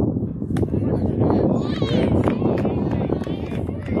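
Spectators' voices at a youth baseball game: indistinct chatter and higher-pitched calls over a steady low rumble, with a sharp click about half a second in and a shout of encouragement at the very end.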